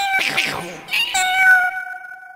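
Cat meowing: a meow at the start, then a longer meow about a second in, held at one pitch and fading out.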